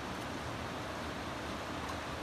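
Steady rush of a boulder-strewn river flowing.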